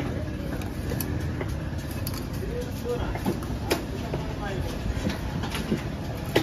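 A long knife slicing a large fish on a wooden chopping block, with a few short sharp knocks of the blade. Behind it runs a steady rumble of background noise with faint voices.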